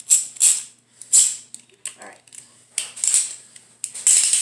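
Plastic Beyblade parts rattling and clicking in the hands in several short, irregular bursts.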